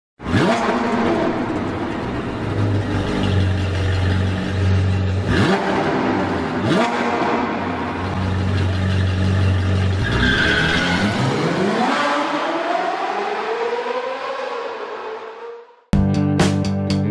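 Sports car engine running in a produced intro effect, with two quick whooshes around five and seven seconds in. About ten seconds in, the engine revs up with rising pitch, then fades out near the end.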